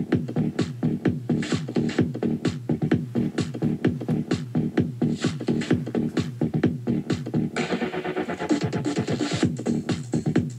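A song with a fast, steady beat played from cassette on a Quasar GX3632 boombox through its newly fitted 4-ohm replacement speakers, at about 73 dBA. A hissing swell rises over the beat for about two seconds near the end.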